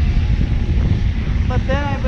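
Wind buffeting an action camera's microphone while riding along, a steady low rumble; a woman's voice comes in about one and a half seconds in.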